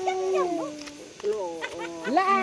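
Several women's voices talking over one another. In the first second one voice holds a long, slowly falling note.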